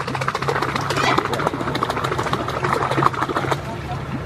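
Low, steady hum of a small boat's outboard motor idling, fading in and out, under indistinct voices of people aboard and scattered short clicks and splashes.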